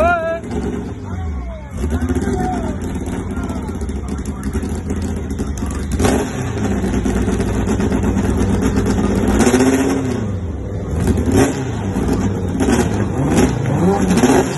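Sixth-generation Honda Civic hatchback drag car's engine running on the starting line. It is revved up and back down about nine to ten seconds in, then blipped in quick revs near the end.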